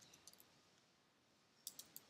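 Near silence broken by faint computer keyboard clicks: a couple of light ones just after the start, then a quick run of about four near the end as characters are deleted.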